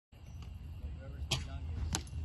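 Baseball bat striking a pitched ball in batting practice: a sharp crack near the end, after another sharp knock about a second in, over a steady low rumble.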